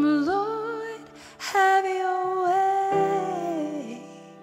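A woman singing long held notes over soft, sustained piano chords in a slow worship song; her last note slides down near the end.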